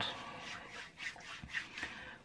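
Faint rustling and rubbing of clothing as a seated man shifts position, with a few soft scratchy scrapes.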